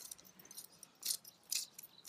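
Small hand cultivator fork scratching through loose garden soil, working fertilizer in: a few short, faint scrapes, the clearest about a second in and another half a second later.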